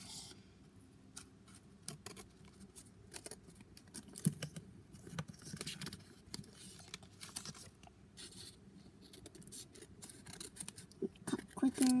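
Scissors cutting through a thick stack of folded paper, a string of unevenly spaced snips.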